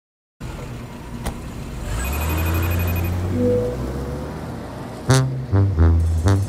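Opening of a recorded banda song: a brief silence, then a low rumbling, noisy intro with a short run of high beeps. About five seconds in, the brass band comes in with sharp staccato hits.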